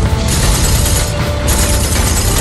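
Loud action-film soundtrack mix: music with heavy rumble and dense mechanical clattering, on the tail of an explosion.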